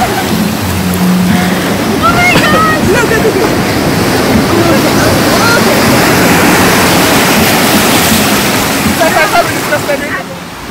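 Sea surf crashing and rushing over rocks, loud and unbroken, with voices calling out briefly about two seconds in and again near the end.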